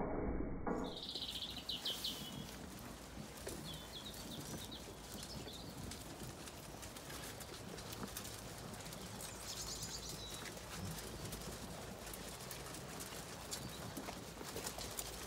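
Zwartbles ewes and lambs eating feed at a trough: steady soft chewing, rustling and small clicks. Small birds chirp in three short bursts, about a second in, around four seconds and near ten seconds, and a music track cuts off just under a second in.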